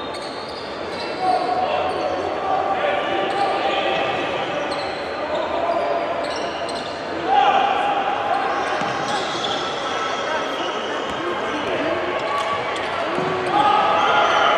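Basketball game sound in a large indoor hall: a basketball bouncing on the hardwood court over a steady bed of crowd voices and shouts. Held tones rise out of the crowd now and then, the loudest starting about seven seconds in and lasting a couple of seconds.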